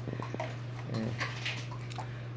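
A litter of puppies eating dry kibble from bowls, with scattered crunching and clicking of kibble.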